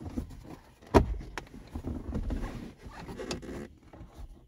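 Plastic dashboard trim of a 2011 Ford F-150 being pressed and snapped back into place. There is a sharp snap about a second in and a lighter click just after, then plastic rubbing and scraping as the panel is worked into its clips.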